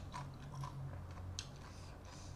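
Close-up chewing of a mouthful of rice noodles and blanched vegetables, with small wet clicks and crunches, the sharpest about one and a half seconds in, over a steady low hum.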